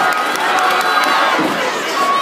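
Arena crowd cheering and shouting, many voices overlapping at once, with the echo of a large hall.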